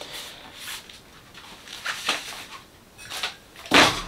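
Handling noises from a radio-controlled truck's plastic chassis being moved about by hand: a few short rustles and knocks, with a louder clatter near the end.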